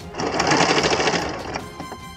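Electric sewing machine running in one short burst of rapid stitching through layers of satin cloth. It starts just after the beginning and stops after about a second and a half.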